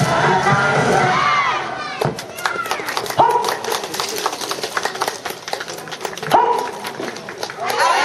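Dance music with voices cuts off about two seconds in, followed by irregular hand clapping and a few short shouted calls.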